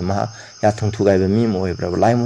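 A man's voice speaking over a steady, high-pitched chirring of crickets in the background, with a brief pause near the start.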